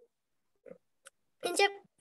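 A person's voice: after a pause with a faint click about a second in, one short drawn-out syllable comes near the end, a hesitant start to the next sentence.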